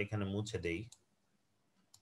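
A man's voice for about the first second, with a mouse click among it, then about a second of dead silence.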